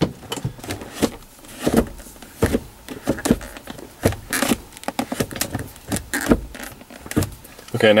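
Five-speed manual gear lever being shifted quickly through the gears, a rapid, irregular series of sharp clicks and clunks as it snaps in and out of each gate.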